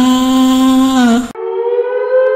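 A cartoon ghost's long, drawn-out vocal cry held at one pitch, bending at its end and cutting off abruptly about one and a half seconds in, followed by a higher, thinner held note.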